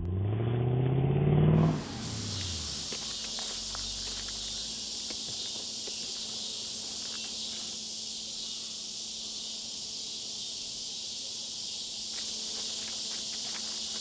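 A car drives by, its engine note climbing as it approaches and then dropping away as it passes, about two seconds long. A steady high chorus of insects follows, with faint footsteps on a dirt path.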